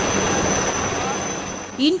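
Helicopter flying low overhead, a steady wash of rotor and turbine noise with a thin high whine, heard through a phone's microphone; it fades out near the end as a woman's voice begins.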